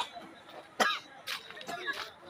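A person's short coughs and vocal sounds, the loudest just under a second in, with two weaker ones later.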